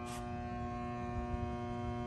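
Energized three-phase transformer of a power distribution unit on 460-volt supply humming steadily, a mains hum with an even stack of overtones. A brief scrape of noise sounds right at the start.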